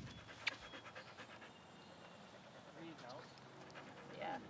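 An Australian cattle dog (red heeler) panting quickly with its mouth open, faint.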